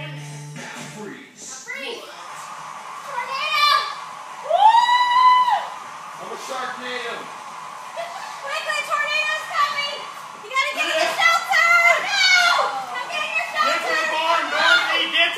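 Children shouting and squealing as they play, with one long, loud high squeal about five seconds in and a burst of overlapping calls in the last few seconds; music plays underneath.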